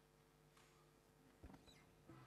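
Near silence: faint room tone with a few soft knocks and a faint squeak, the largest knock about a second and a half in.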